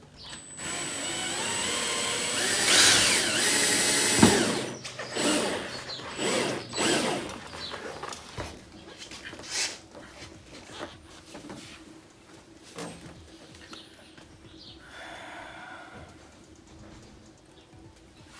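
Cordless drill running for about four seconds as it bores a hole through a car's plastic rear bumper, its motor pitch wavering under load, then stopping with a knock. Scattered small clicks and knocks follow.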